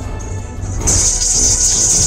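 Background music from the 3D card-battle game, with a steady low beat; a little under a second in, a loud high hissing sound effect joins it.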